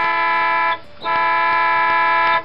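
Cartoon truck horn sounding two long honks, each about a second, with a short gap between them.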